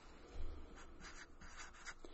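Expo dry-erase marker writing on paper: a series of faint, short strokes of the felt tip across the sheet, starting about half a second in.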